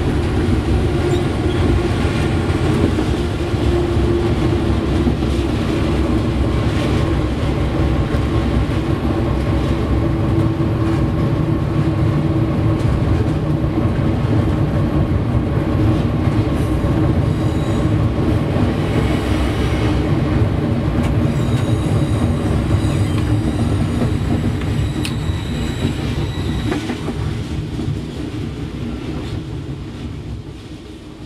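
GE diesel locomotive working under load up a grade, heard from inside the cab: a steady engine drone mixed with wheel and rail noise. A thin high squeal from the wheels comes in during the second half. The sound dies down over the last few seconds.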